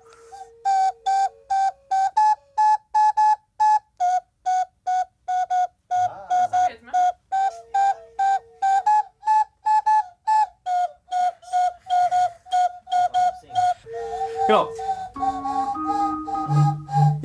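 Several plastic toy whistles blown in a quick run of short single toots, about three a second, each a slightly different pitch.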